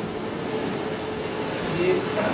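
A steady mechanical hum: a constant mid-pitched tone over an even rumbling noise, with no clear start or stop.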